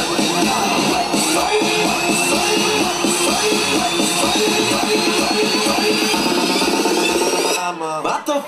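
Loud electronic dance music in a build-up: a high synth tone slowly rising in pitch over a quickly repeated stuttering note that gets faster, breaking off shortly before the end.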